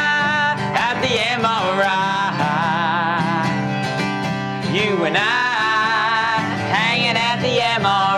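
Acoustic guitar strummed under a man and a woman singing together, the voices holding long notes with a waver.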